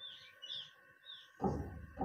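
A few faint, short bird chirps, scattered through the first second, over a steady faint background hum; a soft noise rises near the end.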